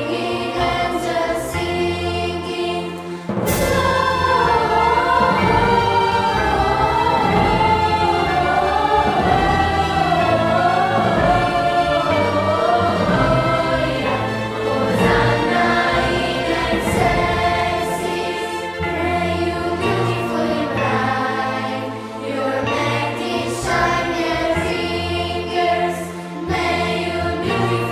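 A choir sings a Christmas song over instrumental accompaniment. About three seconds in, a sharp hit opens a louder passage with a wavering sung melody line.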